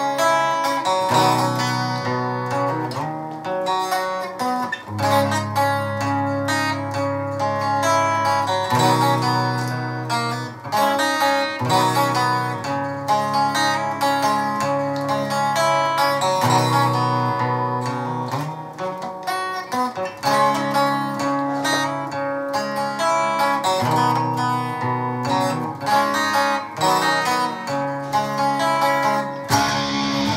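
Cort electric guitar on a clean tone, picking a slow arpeggio with the notes ringing over one another and the chord changing every second or two.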